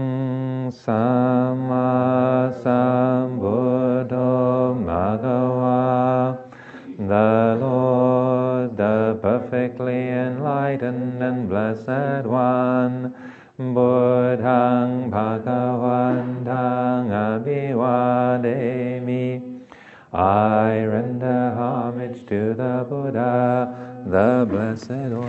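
Theravada Buddhist devotional chanting in Pali, held on one low steady pitch. It runs in long phrases with a short break for breath about every seven seconds.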